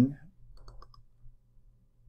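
A few faint computer mouse clicks a little over half a second in, over a low steady hum.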